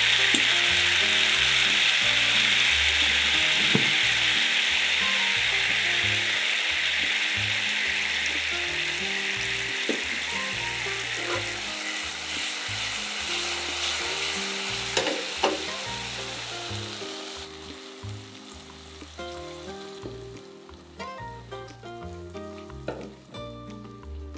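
Soy and oyster sauce mixture sizzling in hot oil around two fried eggs in a frying pan. The sizzle slowly dies down with the burner turned off and fades out about three-quarters of the way through, leaving a few light clicks.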